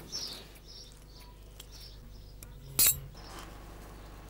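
Iron scissors snipping stray ends off a thick braid of berceo grass fibre: a few light snips, then one louder, sharp metallic snip about three seconds in.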